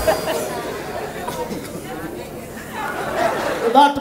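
Indistinct chatter from the audience in a large hall, with a man's voice starting to speak near the end.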